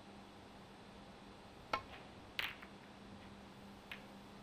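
Snooker balls being struck: a sharp click of cue on cue ball about halfway through, then a quick cluster of clacks as balls collide, and one more light click near the end, in a quiet arena.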